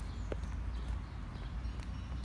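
Footsteps on a paved path, a few faint clicking steps, over a steady low rumble on the phone's microphone.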